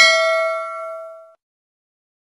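Notification-bell ding sound effect: a single bright chime with several ringing tones that fades out within about a second and a half.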